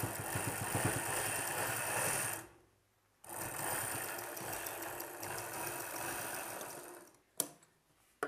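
Sewing machine stitching through layered blouse fabric in two runs, about two and a half seconds and then about four seconds, with a short pause between. Near the end, a single sharp snip of scissors cutting the thread.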